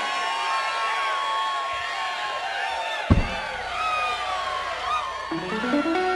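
Live-concert audience cheering and whooping between songs, over lingering sustained instrument tones from the stage. A single deep thump about three seconds in.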